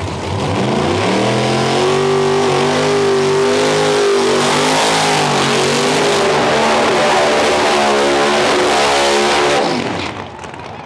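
Small-tire drag car, a fourth-generation Chevrolet Camaro, doing a burnout. The engine revs up within the first second, then holds high, slightly wavering revs while the rear tires spin in heavy smoke, and cuts off sharply just before the end.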